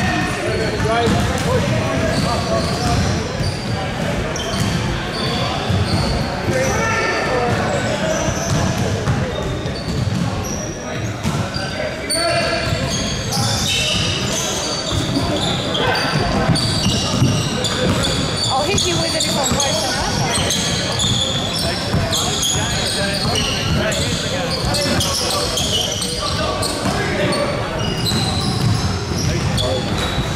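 Live basketball play in a large echoing gym: a basketball bouncing on the hardwood court, many short high-pitched sneaker squeaks, and indistinct shouts from players and onlookers.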